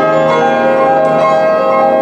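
Solo grand piano playing a sustained passage, its notes ringing on over one another as new ones are struck every half second or so.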